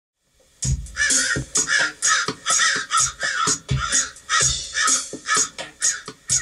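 Crows cawing over and over in quick, harsh calls, starting about half a second in, with low drum thumps underneath as a song's intro begins.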